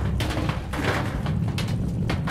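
Thunder sound effect: a continuous low rumble with rushing noise that swells about a second in.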